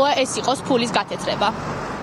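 A voice speaking, which stops about a second and a half in and leaves a steady outdoor background hiss.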